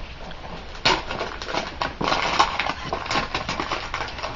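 Gift-wrapping paper being torn and crumpled as a present is unwrapped: an irregular crackling rustle that starts about a second in and continues.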